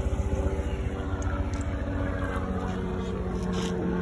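Live-bait tank's recirculating pump running steadily with a low motor hum, while its spray head churns and bubbles the tank water.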